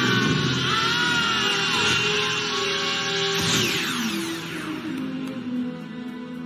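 Dramatic soundtrack music playing, with several falling sweeps about three and a half seconds in.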